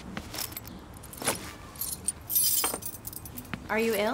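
A bunch of keys jangling about halfway through, among scattered light clicks and knocks. Near the end there is a brief murmured voice sound.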